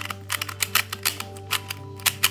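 Plastic novelty Pyraminx being turned rapidly during a speed-solve: a fast run of sharp clicks, several a second, as its layers snap round. The puzzle turns badly.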